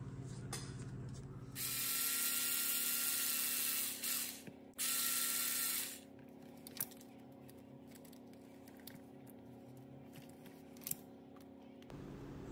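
Cordless electric screwdriver running in two spurts, the first about two and a half seconds long and the second about a second, working the small screws of an RC crawler's motor mount. A few faint clicks follow.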